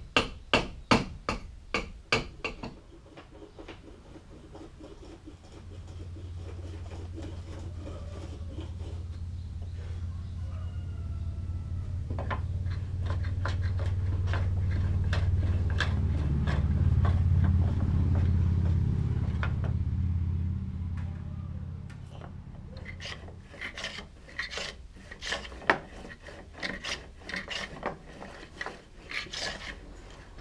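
Hand tools working the oak rabbet of a wooden boat hull. There is a quick run of strikes, about two a second, at first, and irregular scraping and tapping strokes near the end. In between, a low rumble swells and fades over about fifteen seconds.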